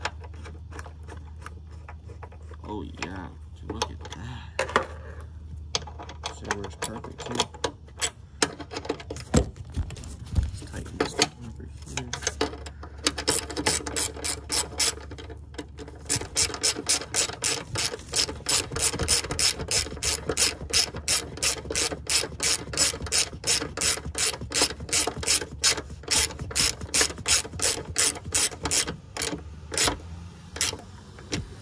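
Hand ratchet wrench clicking in a long, even run of strokes, about three clicks a second, as a fastener in the engine bay is turned. Before that, in the first half, scattered tool clicks and knocks from handling tools and parts.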